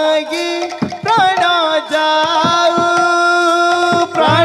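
Devotional kirtan music: a voice bends up about a second in and then holds one long sung note, over sharp drum and jingle-clapper strikes.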